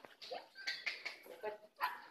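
A dog whimpering in short, high whines, with voices murmuring underneath.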